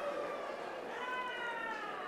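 A distant high-pitched voice in a large hall, giving long drawn-out calls, one after another, each slowly falling in pitch.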